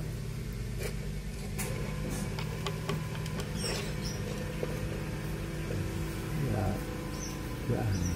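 Light clicks and creaks of a plastic bottle being handled on an iron spearhead, over a steady low hum, with a few brief high squeaks.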